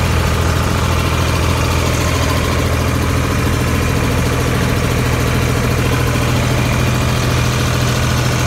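A mobile seed-and-grain cleaner running while cleaning hemp seed, its screenings auger turning in the side trough: a steady, loud low mechanical hum that does not change.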